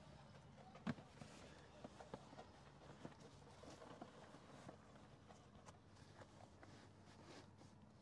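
Faint, scattered clicks and knocks of a plastic infant car seat carrier and base being handled and set on a truck's cloth rear bench, the sharpest click about a second in, over near silence.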